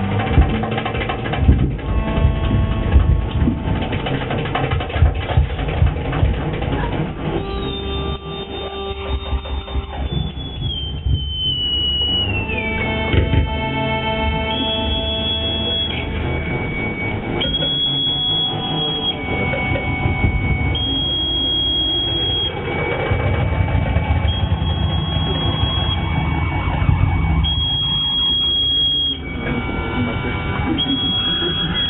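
Live improvised electronic noise music: dense clattering, rumbling textures, then a high thin electronic tone that slides down in pitch and settles into switching back and forth between two pitches every second or two over a low rumble.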